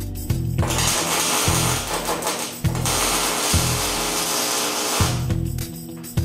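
Arc welder tacking a steel roll-cage dash bar in place: two spells of loud, even crackling hiss of about two seconds each, with a short break between them, over radio music.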